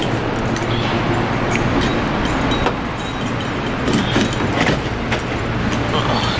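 Keys on a key ring jangling and clinking now and then as a person walks, over a steady low hum.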